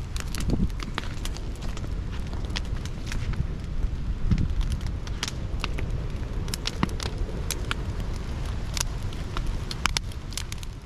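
Large outdoor wood fire of big blocks and timber burning, with sharp irregular crackles and pops over a steady low rumble.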